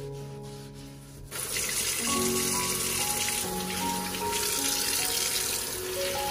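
Kitchen tap turned on about a second in, then water running steadily from the faucet into the sink basin.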